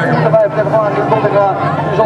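Indistinct talking, with a steady low hum underneath.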